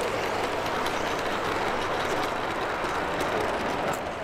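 LGB G-gauge model train rolling past close by: a steady rolling rush of wheels on track, with light scattered clicking.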